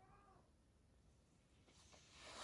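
A single faint, brief whimper from a baby monkey in the first half second, then near silence.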